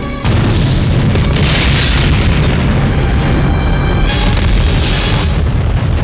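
Explosion booms over film-trailer music, starting suddenly about a quarter of a second in, with fresh blasts swelling about one and a half and four seconds in.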